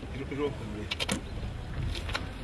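A low, steady outdoor rumble, with a faint brief voice near the start and a quick run of three sharp clicks about a second in.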